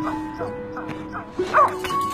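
Soft music of held notes, over which a small dog gives several short whining cries, the loudest about a second and a half in.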